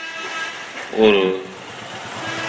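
A man speaking Tamil into a microphone: a pause with a faint steady high tone, then a single word about a second in.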